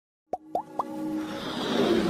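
Animated intro sound effects: three quick pops, each a short upward-sliding blip, in quick succession, then a swelling whoosh that builds louder over a held musical tone.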